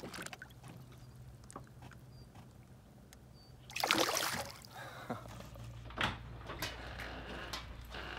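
A largemouth bass splashes once at the side of a small boat as it kicks free of the hand releasing it, about halfway through. Afterwards a low steady hum with a few scattered clicks and knocks.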